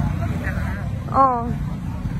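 Slow street traffic: motorbike and car engines running at low speed in a steady low rumble. A person's voice calls out briefly a little over a second in, the loudest moment.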